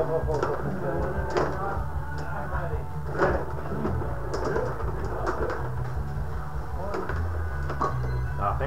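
Rod hockey game in play: irregular sharp clicks and clacks from the puck and the rod-driven players, over muffled background voices and music.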